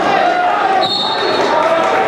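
Spectators in a gymnasium talking and shouting during a wrestling bout, echoing in the hall, with thumps from the wrestlers on the mat. A brief thin high tone sounds about a second in.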